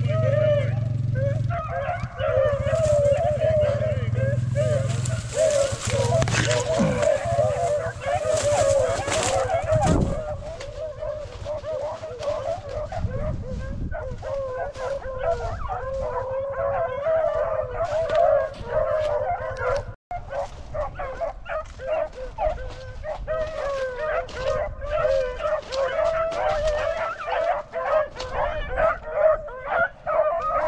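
A pack of beagles baying and howling without a break, running a rabbit's scent trail. A low wind rumble on the microphone fades out about a third of the way in.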